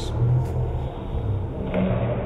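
A low, uneven rumble with a steady background hiss, no speech.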